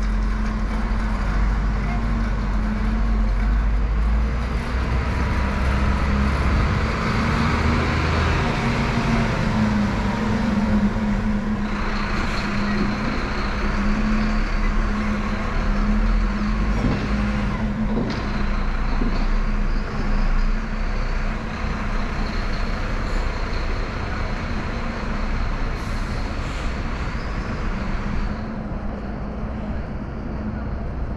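Road traffic on a city street: engines of passing cars and buses running in a steady rumble. A thin high whine joins in a little under halfway through and holds until near the end.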